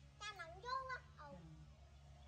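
Baby monkey making two short, high-pitched, wavering calls in quick succession while being hand-fed.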